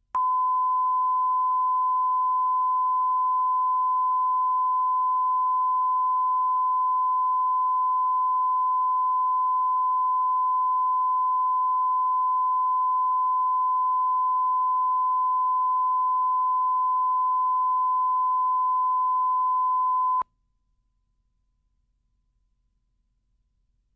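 Steady 1 kHz line-up tone recorded with the colour bars at the head of a broadcast tape: a single unwavering pitch that starts abruptly and cuts off sharply after about twenty seconds.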